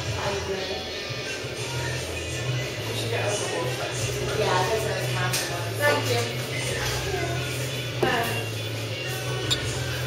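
Background music with a steady bass line, and people talking nearby.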